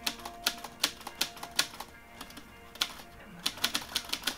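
Manual typewriter being typed on: a dozen or so sharp key clacks at an uneven pace, under soft background music with held notes.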